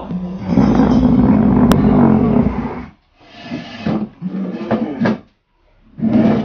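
A long, loud, guttural growling roar in a possessed-monster voice, about two and a half seconds, followed by a few shorter rough growls.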